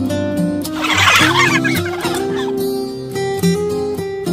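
Guitar music playing steadily, with a burst of poultry calls about a second in that lasts roughly a second.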